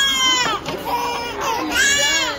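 Infant crying in high wails while her ears are pierced, one cry at the start and another near the end.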